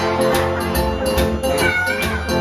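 Jug band playing live: a steady percussive beat under resonator guitar and harmonica, with a wailing, bending high note near the end.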